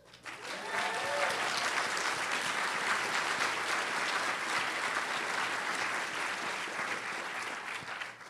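A theatre audience applauding: the clapping swells up within the first half-second and carries on steadily, easing a little near the end.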